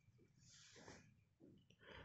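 Near silence: room tone, with one faint short hiss about halfway through.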